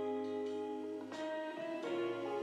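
Background instrumental music with sustained chords that change about a second in and again near the end.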